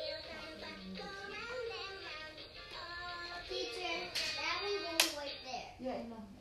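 A children's song with sung melody lines playing in a classroom, with a single sharp clap or knock about five seconds in.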